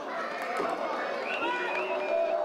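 Several voices shouting and calling out over one another, a goal celebration by players and onlookers.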